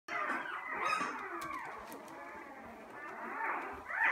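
A litter of newborn puppies squeaking and whimpering, several at once, in thin, overlapping cries that rise and fall.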